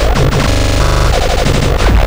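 Distorted electronic beat from a Perkons HD-01 drum machine and modular synthesizer rig, heavy on kick drum. About half a second in the groove breaks into a rapid, evenly repeating buzz with quick pitched blips for about a second, then the heavy beat comes back near the end.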